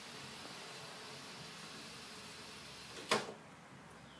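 Wall-mounted chemical dispenser filling a spray bottle from the bottom with diluted cleaner: a steady, faint hiss of running liquid. A little after three seconds in, a sharp click and the flow stops.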